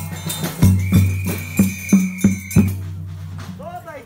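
Folk-group drum beating about three strokes a second, each stroke ringing low. A single long high whistle note sounds through the middle. Voices start singing near the end.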